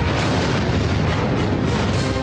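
Film soundtrack: a heavy boom-like crash effect with a dense rumbling noise, layered over dramatic background music.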